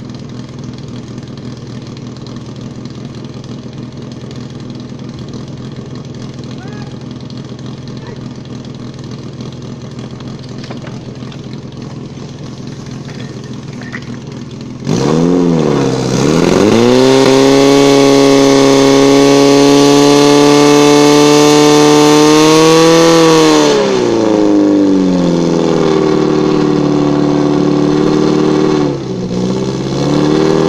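Portable fire pump's engine idling steadily, then opened up suddenly about halfway through: its pitch dips and sweeps up, holds at a high, loud run under load for about eight seconds, eases back, dips briefly near the end and picks up again. During the loudest stretch a broad rushing hiss rides over the engine note.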